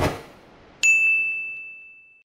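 Logo sting sound effect: a whoosh dying away at the start, then, just under a second in, a single bright bell-like ding ringing on one high tone and fading away.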